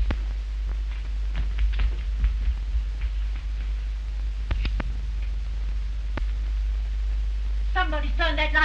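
Steady low hum and faint hiss of an early optical film soundtrack, with a scatter of faint clicks and knocks, two sharper ones about four and a half seconds in.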